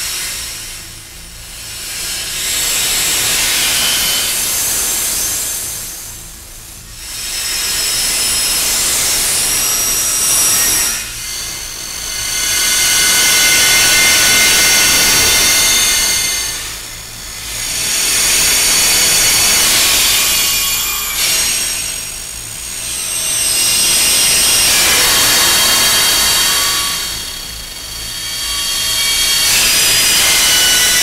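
Experimental electronic noise music made on synthesizers: a harsh wash of noise with steady high tones held through it. It swells and fades about every five to six seconds.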